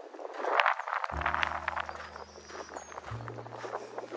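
Footsteps crunching on a gravel trail, loudest about a second in. Background music of low held notes comes in about a second in and changes note near the end.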